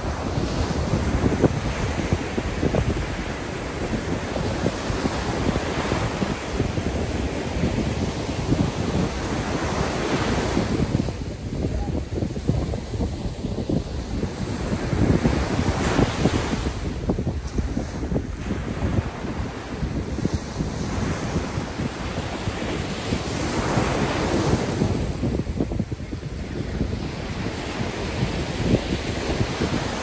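Ocean surf breaking and washing up a sandy beach, the wash swelling and easing every several seconds, with wind buffeting the microphone.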